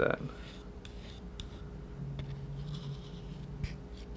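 A metal palette knife spreads and scrapes thick paint across paper: soft, intermittent scraping and squishing, with a light tick near the end.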